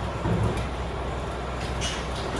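Hands handling a black iron-wire bird cage: a dull knock about a third of a second in and a short light click near the end, over a steady low rumble.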